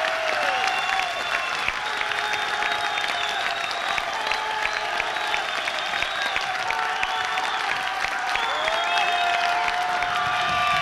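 Concert audience applauding and cheering, a dense stream of clapping with sustained calls over it.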